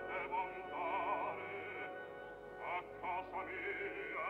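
Operatic voice singing with a wide vibrato over a sustained orchestral accompaniment, in short phrases. The recording sounds dull, with no high treble.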